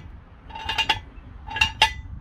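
Toothed steel ratchet post of a Big Red jack stand being lifted, its latch clicking over the teeth with a ringing metallic clink. Two quick bursts of several clicks, about a second apart.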